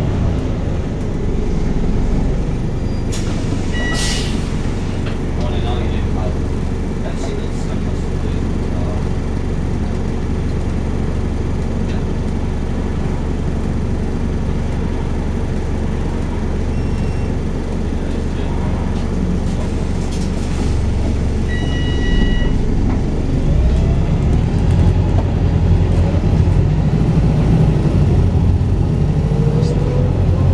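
Volvo B5TL double-decker bus's four-cylinder diesel engine heard from inside the passenger saloon, running steadily as the bus travels, then pulling harder and getting louder about two-thirds of the way through, with a rising whine near the end. A short high two-note chime sounds twice.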